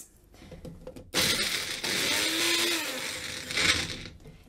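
Personal bullet-style blender's motor running for nearly three seconds, starting about a second in, chopping chilies in its cup. The motor pitch rises and then falls before it stops just before the end.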